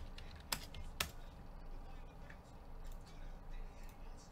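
Computer keyboard typing: faint scattered key taps, with two sharp clicks about half a second apart near the start.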